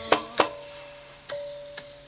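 Small Thai hand cymbals (ching) of a Nora ensemble struck several times. Each stroke is a sharp click that leaves a high, steady ringing, with a quieter stretch in the middle before the strokes resume.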